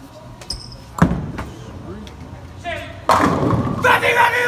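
Bowling ball released onto the lane with a loud thud about a second in, rolling with a low rumble, then crashing into the pins about two seconds later.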